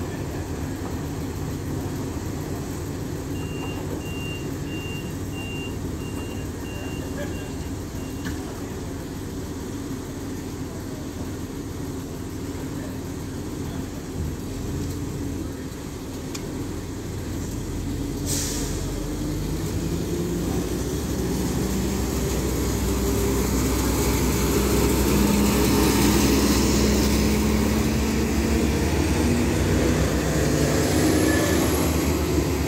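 Siemens Desiro diesel multiple unit idling, with a run of short door-warning beeps in the first part and a brief hiss of air about midway; its diesel engines then rev up and grow steadily louder as the train pulls away.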